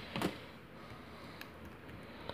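Faint metal ticks of a lock pick and tension wrench being worked in a brass padlock's keyway, with a short low handling noise just after the start.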